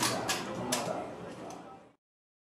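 Low voices in a room with three sharp clacks, the last one fainter; the sound cuts off just before the end.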